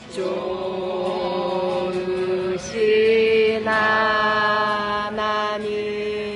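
Voices singing a slow Christian hymn in long held notes, stepping up and down in pitch, over a steady lower tone.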